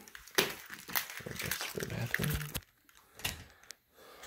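Rustling, crinkling handling noise on a handheld phone's microphone, a run of small clicks and scrapes that drops away about two and a half seconds in, leaving a few faint clicks.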